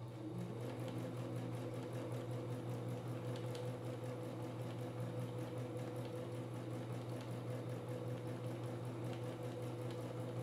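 Household electric sewing machine running continuously at a steady speed, free-motion quilting through layered fabric with a darning foot. It makes a steady hum that holds one even pitch.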